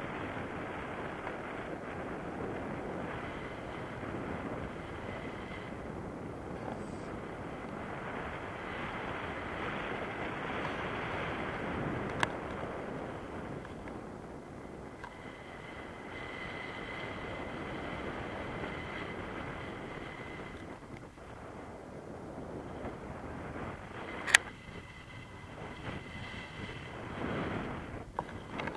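Wind rushing over the microphone of a camera worn on a paraglider in flight: a steady rushing noise with a faint thin whistle through it. A small click sounds about midway and a sharp, louder click near the end.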